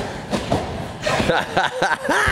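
Brief laughter and voice sounds, with a few dull thuds of feet landing on a trampoline bed.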